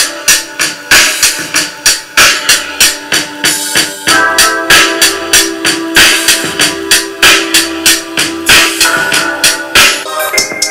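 Trap-style music with a steady beat of about three sharp drum strikes a second and held keyboard notes, played through a Kicker CSC65 6.5-inch two-way coaxial car speaker held in the hand with no enclosure. A low held note comes in about four seconds in.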